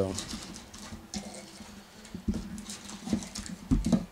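Wrapped trading-card packs rustling and crinkling as they are handled and pulled out of a cardboard box, with a few soft knocks of the packs against the box and table, the loudest near the end.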